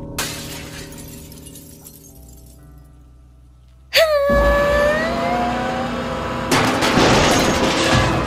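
Window glass shattering as a sound effect over background music. About four seconds in comes a sudden crash with a rising shriek, and a second, longer burst of breaking glass and debris follows near the end.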